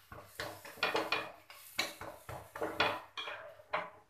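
A metal spatula scraping and clinking against a nonstick tawa as a paratha is turned and lifted off, a string of short scrapes, about two a second.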